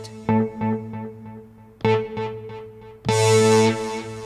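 ROLI Seaboard RISE playing Equator's Vintage Mono Lead synth patch through a delay. The same note is struck softly a few times, each with echo repeats. About three seconds in comes a hard strike, a louder held note. Strike velocity is mapped to turn the delay's feedback and wet level down, so light strikes are at around 40% for both and harder strikes don't have the same delayed effect.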